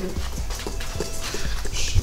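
Wire whisk knocking and scraping against a stainless steel mixing bowl in quick irregular clicks as flour and baking powder are stirred together by hand.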